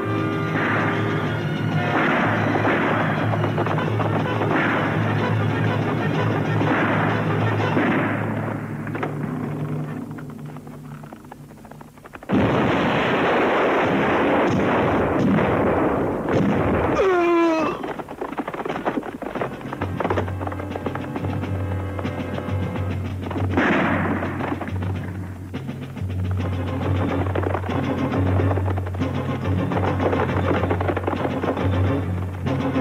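Western film battle soundtrack: dramatic film score over gunfire and explosions. The music dips for a few seconds, then comes back with a sudden loud burst about twelve seconds in.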